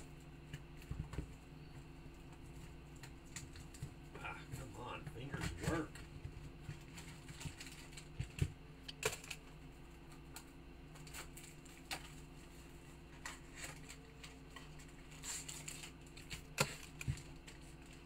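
Trading cards and their plastic holders and foil pack wrapping being handled: scattered light clicks, taps and crinkles over a steady low hum.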